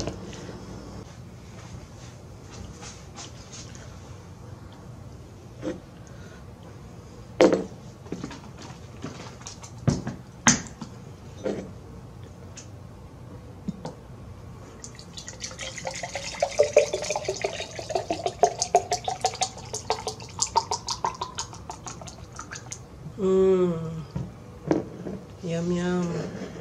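Juice poured from a plastic jug into a glass mason jar, the pitch of the filling rising steadily for about six seconds as the jar fills. Before the pour come a few sharp knocks and clicks as the jug's cap is opened and the jar is handled.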